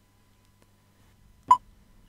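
A single short electronic beep about one and a half seconds in: the touchscreen's key-press tone as the Audio/Video soft key is touched. The rest is near silence.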